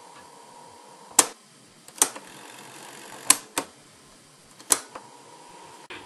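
Piano-key transport buttons of a late-1960s Sharp RD-426U cassette recorder clicking as they are pressed: five sharp clicks, two of them close together, over a low steady hiss, as the test recording is stopped and cued for playback.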